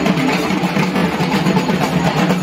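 Dhak, the large Bengali barrel drums, beaten in a fast, dense rhythm, with the clatter and voices of a crowd walking along a street.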